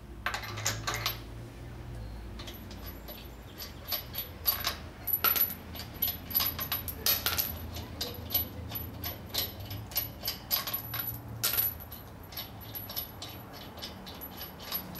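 Loosened steel lug nuts being spun off the wheel studs by hand and clinking together in the palm: many irregular small metallic clicks.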